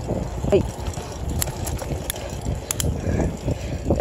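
Bicycle rolling along asphalt: a steady low rumble of tyre and wind noise on the microphone, with a few faint, light clicks from the bike.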